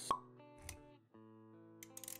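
Intro music with sustained chords, layered with animation sound effects: a short sharp pop with a brief ring just after the start, a low thump about two-thirds of a second in, and quick clicks near the end. The music drops out for a moment around one second, then comes back.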